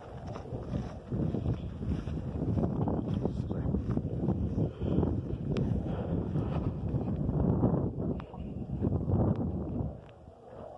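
Wind buffeting the phone's microphone, with the brushing of tall grass underfoot as the person walks through it. A few sharper ticks stand out around the middle and later.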